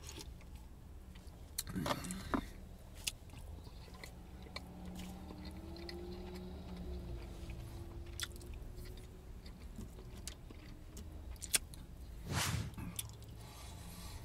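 A man chewing food, with scattered light clicks and scrapes of a plastic fork and knife against a plate. A faint steady hum runs through the middle.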